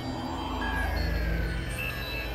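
Experimental electronic synthesizer drone music: a deep bass drone swells through the middle, while thin tones glide slowly downward in pitch above it.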